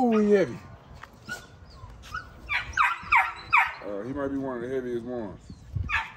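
American Bully puppies crying: a falling yelp at the start, a quick run of short high yips around the middle, and a longer wavering whine just before the end.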